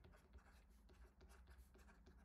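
Very faint scratching and light taps of a stylus writing by hand on a tablet screen, at the edge of near silence.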